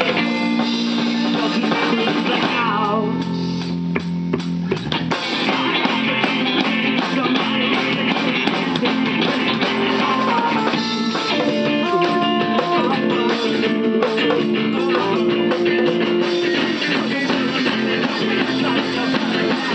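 Small rock band playing live: acoustic guitar, bass guitar, keyboard and drum kit together.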